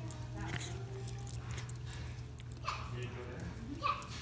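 A small dog vocalizing in play with short whines and grumbles as it thrashes about on a couch blanket. A few of the calls rise in pitch, around three seconds in and near the end.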